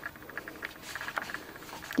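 Pages of a handwritten notebook being turned by hand: faint paper rustling with a scatter of small ticks.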